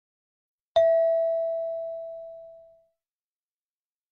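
A single bell-like chime struck once about a second in, ringing clear and fading out over about two seconds: a cue tone between items of a JLPT listening test.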